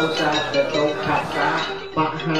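A melodic singing voice over music, with light metallic clinking in the first half-second.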